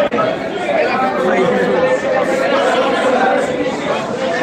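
Crowd chatter: many men's voices talking over one another at once in a packed billiard hall, steady and loud, with no single voice standing out.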